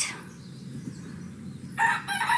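Quiet low background noise, then a rooster starts crowing near the end, one long drawn-out call.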